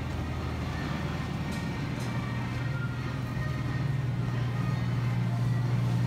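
Steady low hum of a refrigerated supermarket display case, growing stronger about two seconds in, over a general store hubbub with faint background music.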